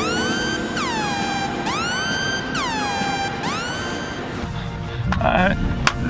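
Synthesized transition sound effect: a bright, many-overtoned tone that swoops up and then down in turn, about four glides over four seconds. Near the end come short voice sounds and a few sharp clicks.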